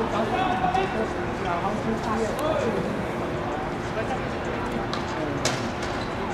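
Players' voices calling out across the court during a small-sided football game, over the general noise of play. A single sharp knock comes near the end.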